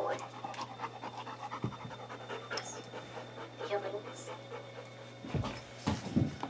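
Panting breaths, repeated quickly, with faint speech now and then and a couple of low thumps near the end.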